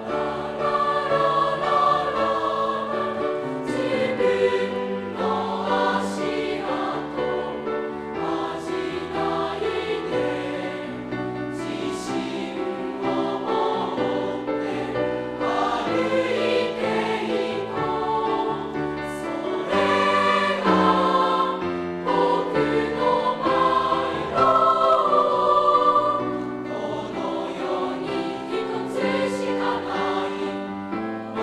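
Mixed-voice choir of junior-high-school boys and girls singing in parts, with piano accompaniment.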